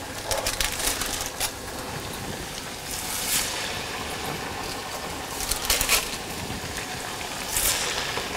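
Chakli dough frying in hot oil in a steel pot on medium heat: a steady sizzling hiss with a few louder crackling swells. The bubbling is moisture cooking out of the dough.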